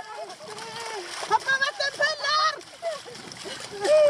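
Several people shouting while sliding and splashing through a shallow mud puddle. The shouts are loudest in the middle.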